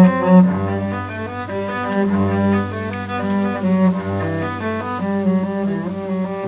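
Instrumental music on bowed strings: sustained, overlapping melody and harmony notes over a held low bass line, with no singing.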